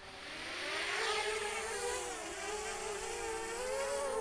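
Small quadcopter drone's propellers spinning up as it lifts off, a whine that rises over the first second and then holds as a steady buzz whose pitch wavers gently.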